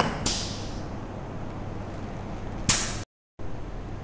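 Compressed air hissing out of a pneumatic trainer circuit: a burst about a quarter second in lasting around half a second, and a shorter, sharper, louder burst near three seconds, after which the sound cuts out briefly. A faint low hum sits underneath.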